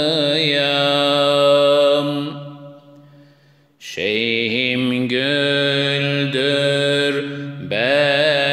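Unaccompanied male voice singing a Turkish ilahi in makam hüzzam: long, ornamented held notes over a steady low drone. The phrase fades out a little past two seconds in, there is a short near-silent breath pause, and a new phrase begins about four seconds in.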